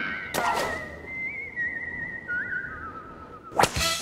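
A long whistled note with a wavering vibrato, held steady and then stepping down to a lower pitch about two-thirds of the way in. It is part of the show's closing theme music. A sharp hit comes just after the start, and a louder hit near the end leads into the next part of the music.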